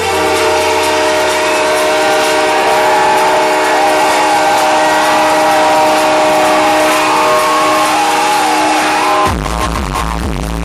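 Electronic dance music played loud over a club sound system during a breakdown. The bass drops out, leaving held synth chords and a melody line, and then the kick and bass come back in suddenly about nine seconds in.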